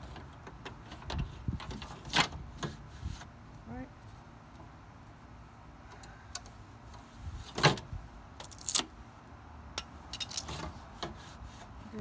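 Scattered sharp clicks and knocks of hands and a plastic ruler handling a car door's window glass, with the loudest knocks a little over halfway through.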